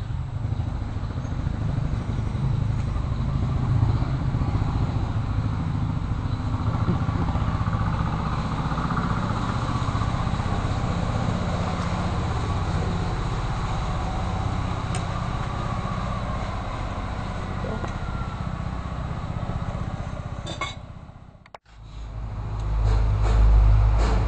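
A steady low engine rumble, like a small motor vehicle running nearby, that cuts out abruptly about 21 seconds in and comes back louder just after.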